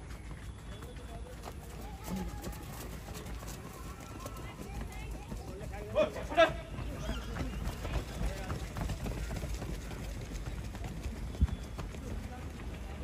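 Footfalls of a group of people running across grass and a dirt track, over a steady low rumble. About six seconds in come two short, loud calls close together.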